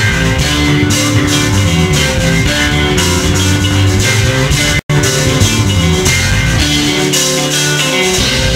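Live rock band playing, with the electric bass line prominent in the low end alongside drums and guitar. The sound cuts out completely for an instant about halfway through.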